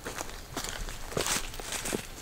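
Footsteps on a forest floor of dry pine straw, leaves and sticks: a few irregular, crisp steps.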